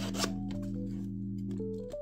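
Background music: a held low chord that stops just before the end. Over it, a few brief scratches and clicks of 3D-printed plastic lightsaber tube segments being slid and turned against each other.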